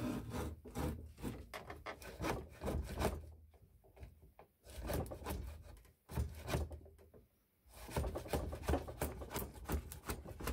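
Stanley No.55 combination plane cutting a moulding along the edge of a pine board. It makes several push strokes, each a rapid rasping scrape of the blade taking a shaving, with short pauses between strokes.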